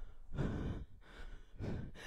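A woman breathing hard into a close headset microphone during a cardio exercise: two soft, audible breaths about a second apart.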